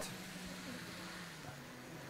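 Faint steady low hum from an analogue model railway as a model train runs on the layout.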